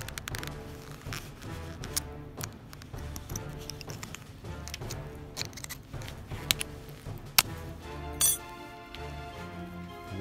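Background music with a steady low line, and a handful of sharp metallic clicks and clinks as pliers pry back the thin metal casing of a smoke detector's ionization chamber.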